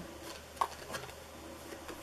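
Faint handling of a tarot deck: cards sliding against one another as one is drawn out, with small short sounds rather than any steady noise.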